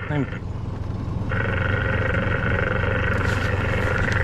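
Steady hiss from the speaker of a diver-to-surface communications box with its channel open, starting about a second in over a steady low hum, just after the end of a voice.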